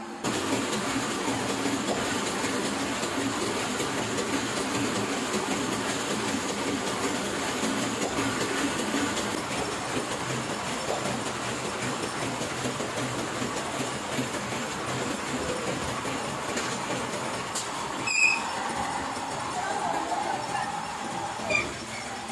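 Heidelberg offset printing press running, a steady dense mechanical clatter, with a brief sharp knock about eighteen seconds in and another near the end.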